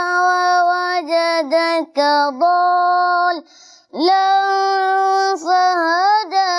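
A boy chanting Quran recitation in Arabic, holding long melodic notes with small turns of pitch. He breaks off briefly for breath about three and a half seconds in, then comes back in on a rising note.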